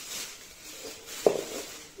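Thin plastic carrier bag rustling as a hand rummages in it, with one sharp knock about a second in.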